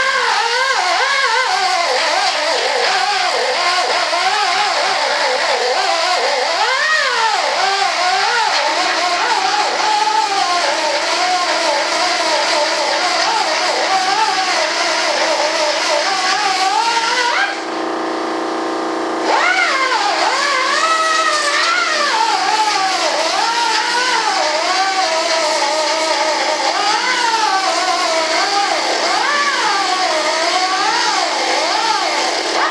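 Belt sander grinding down a hardwood trailing edge, its motor pitch wavering up and down as the work is pressed against the belt. A little past halfway it is briefly run free at a steady, quieter pitch, then loaded again.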